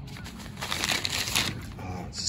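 Plastic packaging around a steel wool pad crinkling as it is handled and dropped back among other bagged pads, loudest for about a second in the middle.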